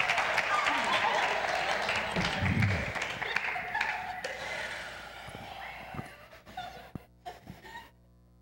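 Audience applause and cheering, loud at first and dying away over about six seconds to a few scattered sounds.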